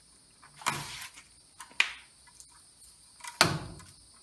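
Stiff electrical cable wires being handled and bent at a plastic outlet box: a few short scrapes and a sharp click, then a louder thump near the end.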